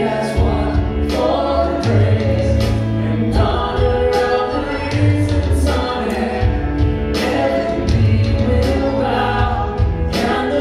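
Live worship band playing a song: several voices singing together over electric guitar, bass guitar and keyboard, with a strong, steady bass line.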